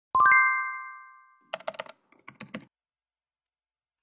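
Intro sound effects: a bright chime of several ringing tones that fades over about a second, then about a dozen keyboard-typing clicks in two quick runs.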